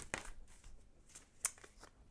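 A deck of tarot cards being shuffled and handled: faint rustles and clicks of card on card, with one sharper snap about one and a half seconds in.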